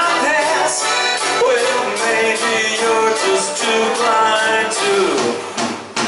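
Live band music: electric and acoustic guitars playing a rock song, with a man's voice singing. The level dips briefly just before the end.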